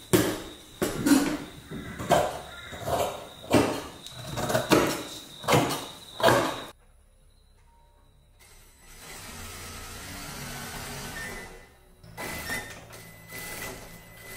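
Scissors cutting through light fabric on a wooden table, in repeated snipping strokes about one or two a second. About two-thirds of the way through, an industrial sewing machine takes over, running with a steady low hum and some clicks.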